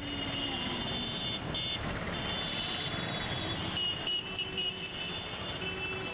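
Busy street traffic: a dense, steady noise of running vehicles, with long high-pitched tones sounding over it.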